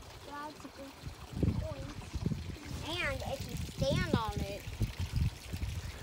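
Young children's voices making a few short, high, sing-song calls, the clearest about three and four seconds in, over the steady trickle of water in a small garden pond.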